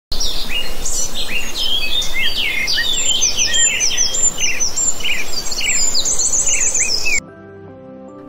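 Many songbirds chirping and singing at once in a dense chorus of short, overlapping high calls that cuts off suddenly about seven seconds in.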